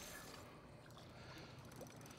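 Near silence: faint steady background noise with a low hum from the boat.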